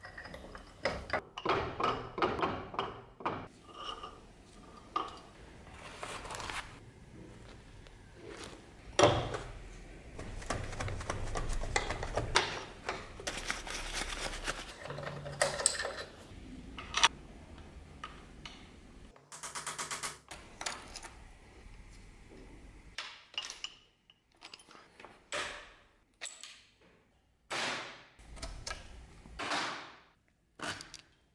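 A wrench working the bolts of an old cast-iron bench vise: irregular metallic clicks, knocks and scrapes, with a few sharper knocks among them.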